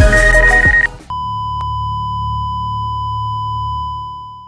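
Background music with a heavy beat that cuts off about a second in, followed by one long, steady electronic beep over a low hum, with a faint tick shortly after it starts.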